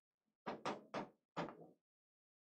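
A pen tapping and stroking on a writing board: four short, faint knocks within about a second while a word is written.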